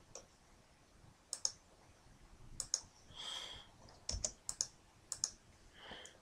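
Faint, scattered clicks from a computer mouse and keyboard being worked, about eight in all, with a short soft hiss a little past the middle.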